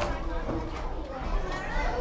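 Many children's voices talking and calling over one another, playground chatter with no single voice standing out.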